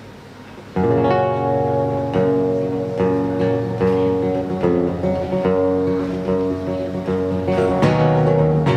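Solo acoustic guitar starts suddenly about a second in and plays the instrumental intro of a folk song: a steady run of plucked notes and chords that ring on into one another.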